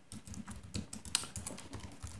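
Computer keyboard typing: a quick, irregular run of key clicks.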